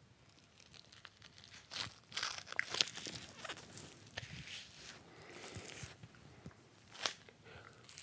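Crinkling and rustling of a stick-on moustache-shaped protector strip being handled and pressed onto the upper lip: irregular small crackles and clicks, loudest about a third of the way in and again near the end.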